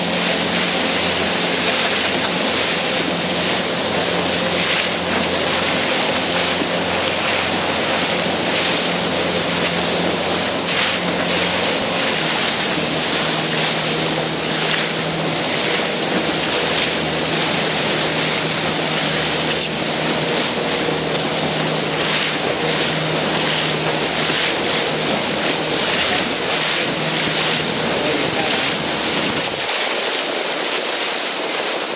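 A motorboat's engine running at a steady hum under heavy wind noise on the microphone, with water rushing past the hull.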